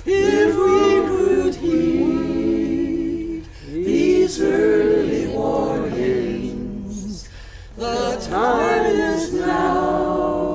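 A group of men and women singing a folk song together in unison, in phrases of a few seconds with short breaths between them.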